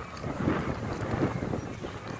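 Wind buffeting a handheld phone microphone, an uneven low rumble with a few gusty surges, over the faint background of a crowd walking and chatting.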